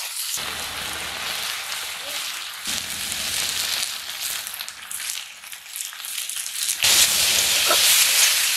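Sliced potatoes and vegetables sizzling as they are stir-fried in a metal kadai, stirred with a metal spatula; the sizzle grows louder near the end.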